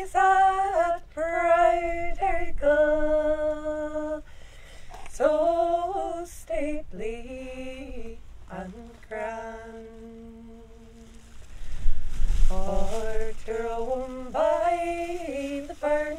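A woman singing an unaccompanied traditional Irish song, one solo voice moving through slow phrases with long held notes. A brief low rumble comes in about twelve seconds in.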